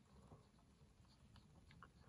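Near silence: a few faint light ticks and scratches from a cotton swab being rubbed along a cassette deck pulley.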